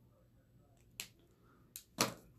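Two short, sharp clicks from a liquid eyeliner pen and small makeup items being handled, about a second in and again near the end, over near silence.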